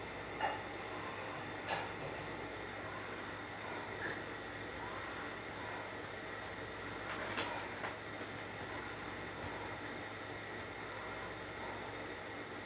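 Spirit box sweeping radio stations: a steady static hiss with a thin high whine, broken by a few sharp clicks and brief sound fragments, about half a second, just under two seconds and about seven seconds in. The session host takes such fragments for spirit voices.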